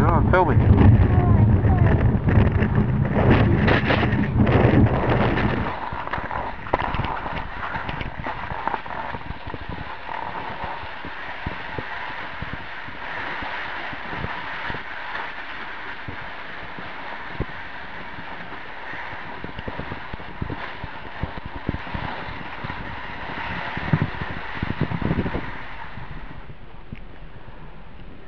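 Low rumble and wind noise on the microphone while riding a chairlift, cutting off suddenly about six seconds in. After that comes the steady hiss of skis sliding on packed snow, with a few scrapes near the end.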